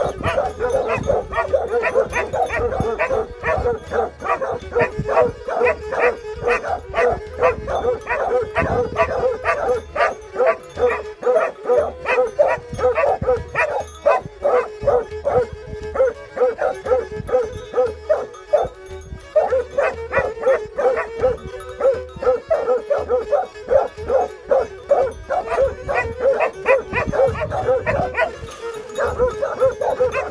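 Plott hound and Serbian tricolour hound barking fast and without let-up, several barks a second overlapping, with a short pause about two-thirds of the way through.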